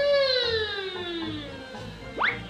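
A baby's long, high-pitched vocalization that glides slowly down in pitch and fades, a happy squeal while being read to.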